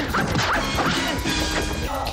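Martial-arts fight soundtrack: music with sharp punch-and-strike impact effects, one right at the start and another about half a second in.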